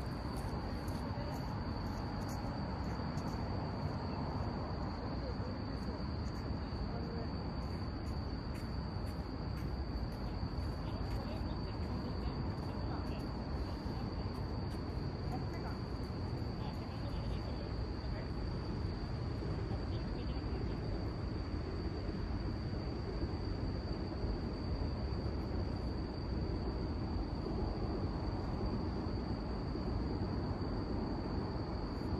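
Insects trilling in one unbroken high-pitched tone, over a steady low background rumble.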